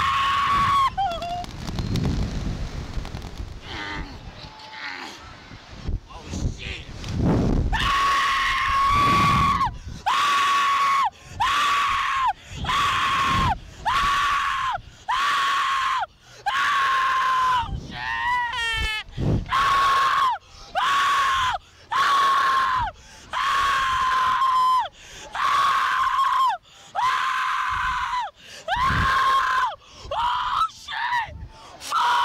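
Slingshot ride rider screaming over and over: a long, high, held scream about once a second, each dropping in pitch as it ends. This runs from about eight seconds in. Before it, a rushing wind noise on the microphone comes with the ride's launch.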